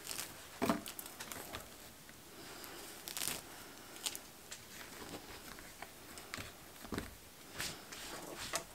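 Hands tucking moss in among dry twigs around floral foam: soft, scattered rustling and crackling, with a few louder crackles, two of them near the end.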